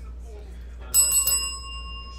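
A bell struck once about a second in, then ringing on with several clear, high tones that fade slowly. It is rung to mark a big hit pulled in a card break.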